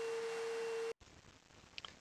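A faint, steady, high-pitched hum over a low hiss, cut off abruptly just under a second in and followed by silence.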